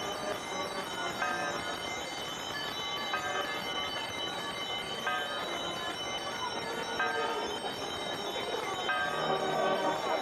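Bells ringing, a stroke about every two seconds, over the steady hubbub of a walking procession crowd.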